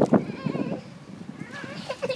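A toddler's brief high-pitched fussing sound near the end, over light slaps and scuffs of small flip-flops on the concrete pool deck.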